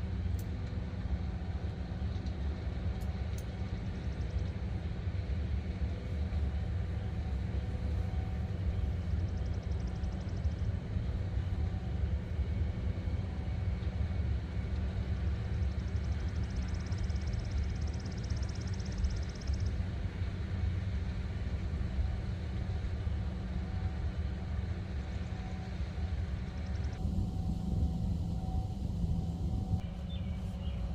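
Wind buffeting the microphone: a steady low rumble that rises and falls, with a faint steady hum underneath.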